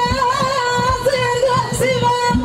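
Live Moroccan Middle Atlas folk music: a woman's voice holds a long, wavering melodic line over quick, steady frame-drum beats.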